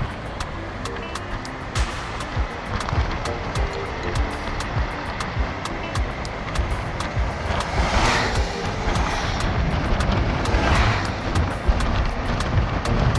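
Road and wind noise from a moving car, with music playing over it. Two brief swells of hiss come about eight and eleven seconds in.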